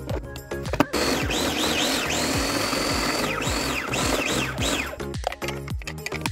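Small electric food chopper running in one steady burst of about four seconds, starting about a second in, as it minces potato chunks and garlic, over background music.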